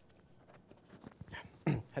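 A man coughs once near the end, after a second or so of quiet room tone.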